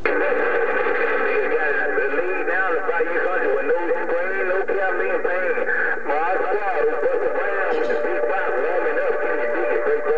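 A distant station's voice reply coming in over a President HR2510 radio's speaker, squeezed into a narrow, tinny band and too garbled to make out, with overlapping warbling voices and steady tones beneath. It comes in abruptly as soon as the local transmitter unkeys.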